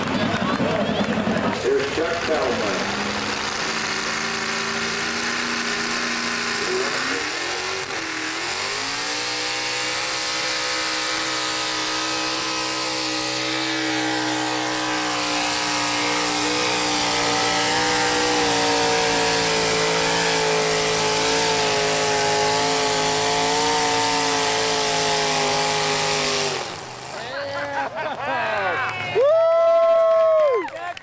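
Chevy pulling truck's engine run hard on a pull. Its pitch climbs about eight seconds in and is held high, wavering slightly, for nearly twenty seconds, then drops away suddenly near the end as the throttle comes off.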